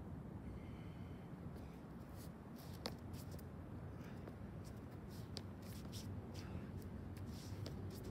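Shoe soles scuffing and scraping on a concrete throwing surface as a thrower turns and shifts through drill positions: many short, light scrapes and clicks over a steady low background rumble.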